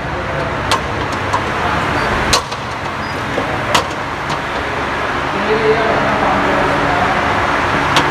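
Steady background noise of a large, echoing hall, with faint distant talking in the second half and a few sharp clicks.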